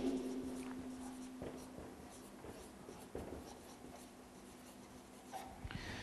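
Felt-tip marker writing on a paper flip chart: a run of faint, short scratchy strokes.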